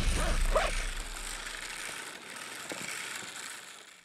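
Hand-cranked Earthway Model 2750 shoulder spreader being turned, its crank and gearbox whirring, fading out gradually.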